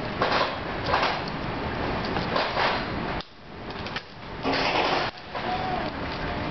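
Gloved hands working a lump of warm pulled sugar on a marble slab and handling a copper tube: a few short scraping and rustling noises, with a quieter pause just after the middle.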